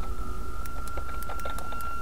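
Computer keyboard being typed on, a quick, irregular run of key clicks, over a steady high-pitched electrical whine and a low hum.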